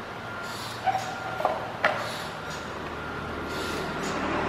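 Net hammock on a metal stand swinging, with a soft rubbing swish at each swing about every one and a half seconds. A short squeak comes about a second in, and two sharp clicks follow.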